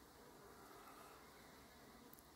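Faint, steady buzzing of honeybees around the hive, in otherwise near silence.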